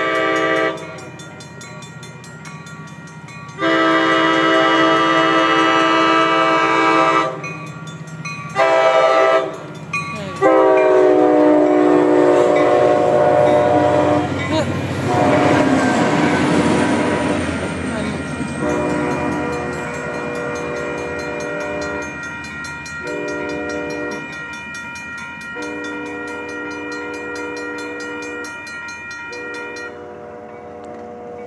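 Commuter train locomotive horn sounding the long, long, short, long grade-crossing signal, its pitch dropping as the locomotive passes about ten seconds in. The passenger cars then rumble past while fainter horn-like tones come and go.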